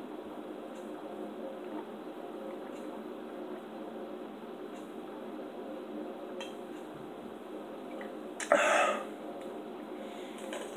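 A person drinking a sports drink straight from a plastic bottle in one long go, swallowing about every two seconds over a steady background hum. A short, loud noise comes about eight and a half seconds in.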